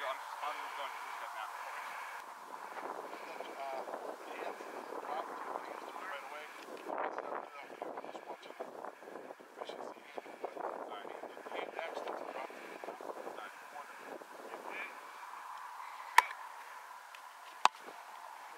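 A football caught with a sharp slap, then punted about a second and a half later with a louder, deeper boot of foot on ball, over faint outdoor background.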